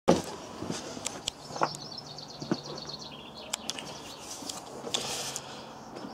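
Footsteps and scattered knocks from the camera being carried, with a bird singing faintly in the background: a rapid trill of repeated high notes stepping down in pitch for about two seconds.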